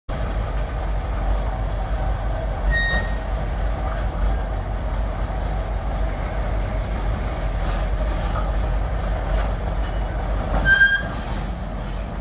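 Antique crawler power shovel moving itself on its tracks, its engine running with a steady low rumble. Two brief high squeals come through, about three seconds in and shortly before the end.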